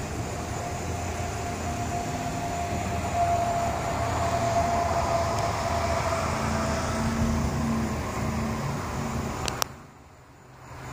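Road traffic going by: a steady hum with a held whine through the first half, then a lower engine hum from a passing vehicle. A sharp click comes near the end, and the sound drops away after it.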